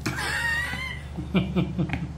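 A person laughing: a high, wavering vocal sound lasting about a second, then four or five short chuckles.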